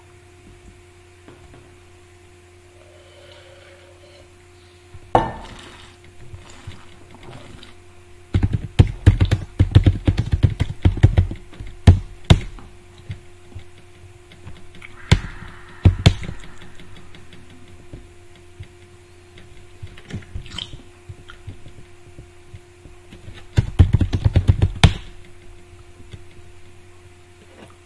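Typing on a computer keyboard in two fast bursts of key clicks, with a few single clicks in between, over a steady electrical hum.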